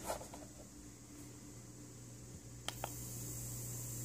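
Two quick clicks of the power button about three-quarters of the way in, then the Feel Life Mini-Air 360 portable mesh nebulizer runs with a faint steady high hiss and a low hum as it starts putting out mist.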